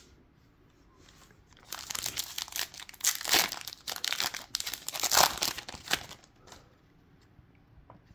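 Foil wrapper of a Topps Chrome baseball card pack crinkling and being torn open, a dense run of sharp crackles starting about two seconds in and lasting about four seconds.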